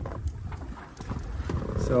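Low wind rumble on the microphone with a few faint knocks; a man's voice starts near the end.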